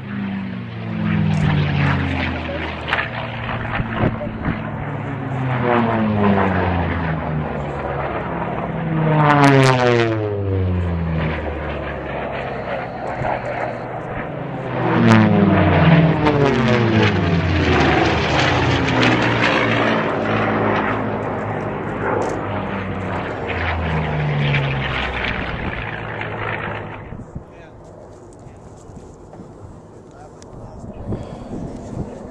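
Propeller-driven racing planes flying past one after another, each engine note dropping in pitch as it goes by. The loudest passes come about a third and halfway through, and the sound dies away near the end.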